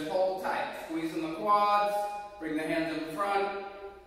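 A man speaking, in short phrases, with no other sound standing out.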